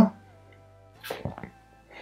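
Faint background music with a few long held notes under a pause in speech, and a brief soft noise about a second in.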